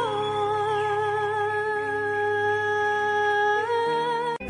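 Christian worship music: a singer holds one long note over soft accompaniment, the pitch stepping up slightly near the end.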